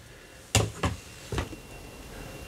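Three light, sharp knocks as a painted miniature on its round base is handled and set down on a cutting mat.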